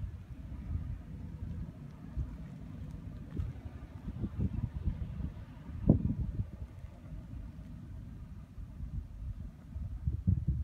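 Wind buffeting the microphone outdoors: an uneven low rumble that comes and goes in gusts, strongest in a sharp gust about six seconds in.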